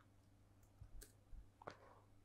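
Near silence with a few faint, short computer mouse clicks in the second half.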